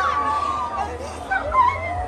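Mourners wailing and crying aloud in grief: several high, wavering voices whose cries rise and fall in pitch, with a long held wail at first and sharper sobbing cries about one and a half seconds in.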